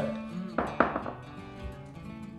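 A whisky tasting glass set down on the bar top, making two short knocks a little after half a second in, over quiet background acoustic guitar music.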